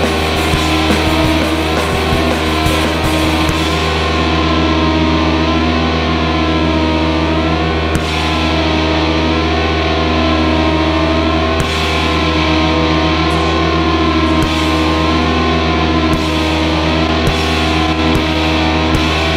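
Live rock band playing loud, with distorted electric guitar over a steady low drone and occasional drum hits.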